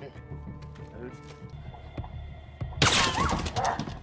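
Film soundtrack: soft background music with a few spoken words, then a sudden loud crash near the end with a voice over it.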